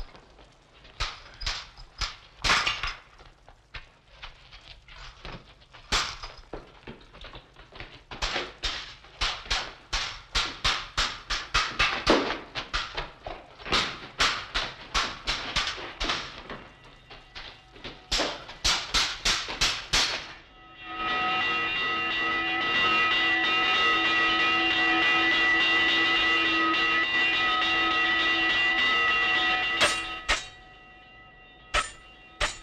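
Sword blades clashing in a fight, in rapid runs of sharp metallic strikes, several a second at times. About two-thirds of the way through, the clashing gives way to a steady ringing of several held pitches that lasts to the end.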